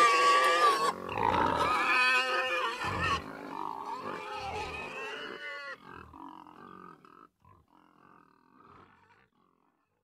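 Animal calls ending a rock track: a run of wavering, pitched calls that grow steadily fainter and die out about nine seconds in.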